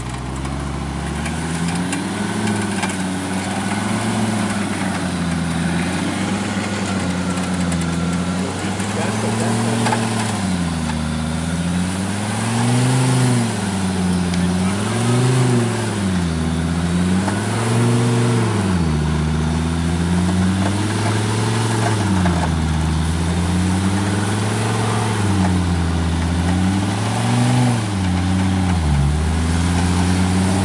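Jeep Grand Cherokee engine working under load as the SUV is driven through deep mud. The engine runs fairly steadily at first; from about nine seconds in, the revs rise and fall over and over, about every two and a half seconds.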